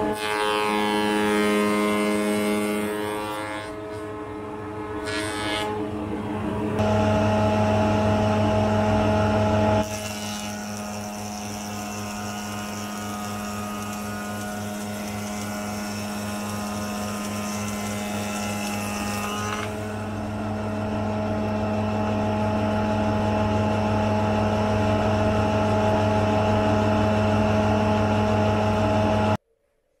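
Spindle moulder running with a steady motor hum and the noise of timber being cut as it is fed past the cutter. The level jumps up and down abruptly a few times, and the sound cuts off suddenly near the end.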